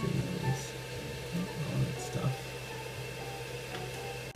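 A steady low hum with a few brief, murmured voice sounds.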